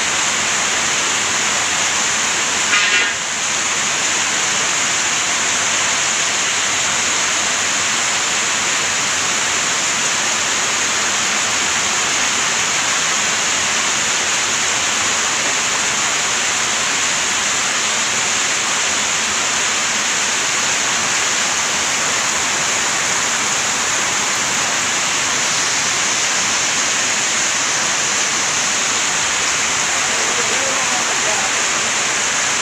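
Heavy rain pouring down steadily, with a brief louder noise about three seconds in.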